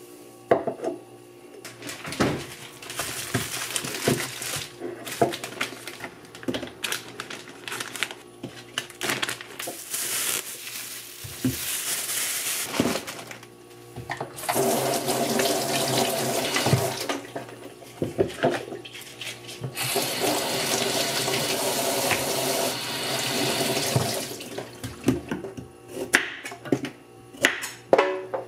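Water from a kitchen tap running into a sink in three spells, each a few seconds long, with small knocks and clatter of things being handled between them.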